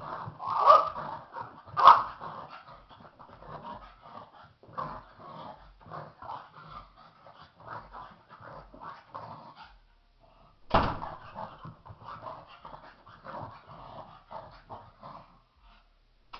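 Pug barking and growling in a long, excited run of short rapid sounds, loudest in a few sharp barks near the start and again just after a brief pause about two-thirds of the way through.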